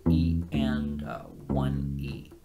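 Kala Journeyman U-Bass (bass ukulele) playing a syncopated funk bass riff: low plucked notes that are held, with new notes starting about half a second in and again about 1.5 s in.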